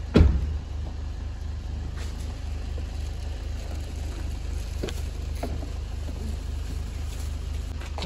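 Car engine idling with a steady low hum. There is one loud thump just after the start, and a few faint knocks follow as luggage is handled in the boot.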